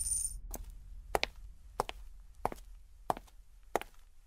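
A steady run of sharp taps on a hard floor, six of them, about three every two seconds, each with a short echo in a large bare room.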